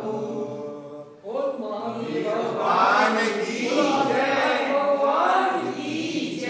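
A group of voices chanting a devotional mantra together, breaking off briefly about a second in and then resuming more strongly.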